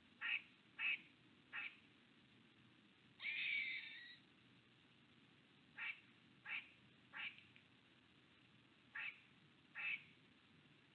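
A series of short mewing animal calls, eight in all, repeated every half second to a second, with one longer, harsher call about three seconds in.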